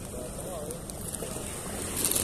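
Steady wind noise on the microphone at the seaside, with a faint, brief wavering voice-like sound about half a second in.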